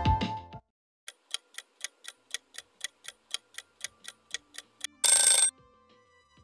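Background music cuts off, then a countdown-timer clock sound effect ticks about four times a second for some four seconds. It ends in a loud half-second sound effect that signals the answer reveal.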